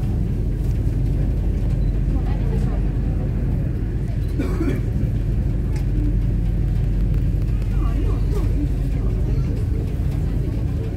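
Steady low rumble of the Staten Island Ferry's engines under way, with indistinct passenger chatter in the background.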